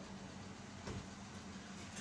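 Faint sound of a pen writing on paper over a steady low background hum, with a soft tap about a second in.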